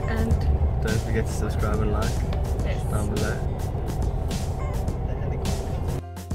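Steady low rumble of a bus's engine and road noise heard from inside the passenger cabin.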